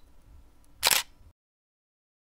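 A single camera shutter click about a second in, over a faint low hum.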